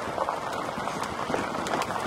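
Car tyres rolling over a loose gravel road: a steady rush of road noise with irregular crunching and popping of small stones.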